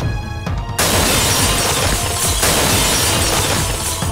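Film soundtrack in which dramatic music is cut, about a second in, by a sudden loud crash that carries on as a long shattering, rushing noise. It is the sound effect of a jeep landing hard on the road after a jump.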